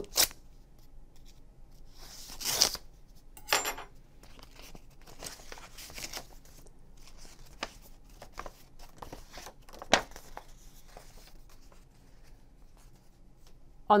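A paper envelope being slit open with a letter opener, the tear loudest about two seconds in with a shorter one just after. Then the folded paper ballot is drawn out and unfolded, with soft paper rustling and a few light taps.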